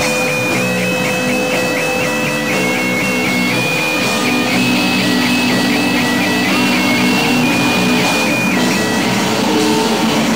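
Experimental noise-rock band playing live, with electric guitars. A high tone hops rapidly back and forth between two pitches over the music and stops about nine seconds in.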